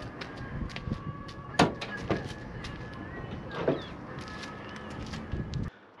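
Clicks and clunks of a Chevrolet SSR's tailgate handle and latch as the tailgate is opened, the sharpest about one and a half seconds in. Under them is a steady low rumble on the microphone that cuts off suddenly near the end.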